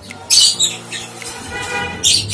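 Lovebird giving a few sharp, shrill squawks, the loudest about a third of a second in.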